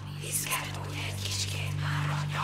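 Several voices whispering with sharp hissing sibilants, over a steady low drone.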